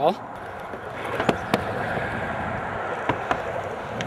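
Skateboard wheels rolling over pavement, a steady rumble with a few sharp clicks from the board along the way.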